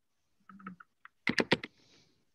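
Typing on a computer keyboard: a few light keystrokes, then a quick run of about four louder keystrokes a little past the middle.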